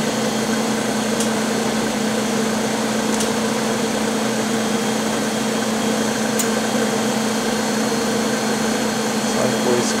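Steady machine hum and hiss of an EVG 520IS wafer bonder system running, with a low steady tone under it and a few faint ticks.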